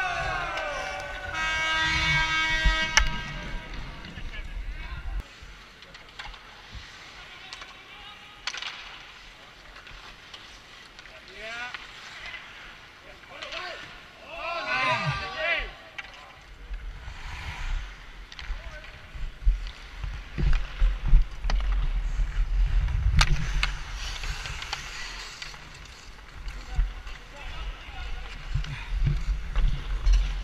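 Ice hockey sounds through a helmet-mounted action camera: wind rumbling on the microphone while skating, a few sharp clacks of sticks or puck, and players' voices calling out unclearly.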